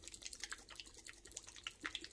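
A bottle of Boom Gel gel stain being shaken by a gloved hand: faint, irregular small liquid slaps and clicks.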